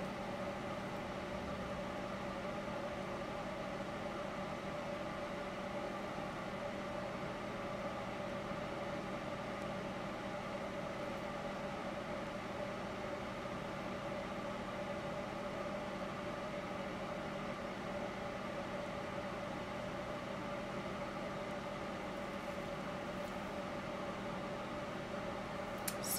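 Steady mechanical hum with several steady tones, unchanging throughout, from a running motor or fan.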